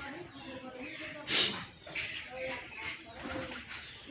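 Outdoor ambience of birds cooing with people's voices in the background, and one short, sharp, high sound about a second and a half in.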